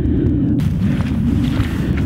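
Strong wind buffeting the camera microphone: a loud, steady low rumble, with a hiss joining about half a second in.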